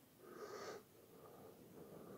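Near silence with one faint breath from a person, about half a second in.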